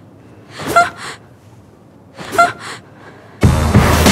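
Trailer sound-design impact hits: three loud hits about a second and a half apart, each swelling up quickly into the strike and followed by a quick smaller echo. The last one, near the end, is the longest and loudest and rings on.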